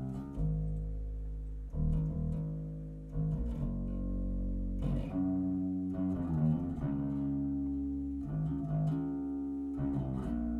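Electric bass guitar playing held notes that change every second or so: a clean DI signal with a little Aguilar Tone Hammer overdrive blended in to give it some mid-range growl.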